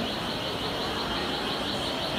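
Shopping-mall ambience: an even murmur of a crowd in a large indoor space, with a steady high-pitched chirring laid over it.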